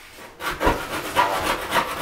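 Long aluminium straight edge scraped across the wet second coat of a two-coat plaster job on blue board, a rasping rub of repeated strokes that starts about half a second in, as the plaster is ruled flat.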